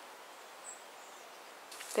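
Quiet outdoor garden ambience, a soft steady hiss, with one faint high bird chirp about a third of the way through.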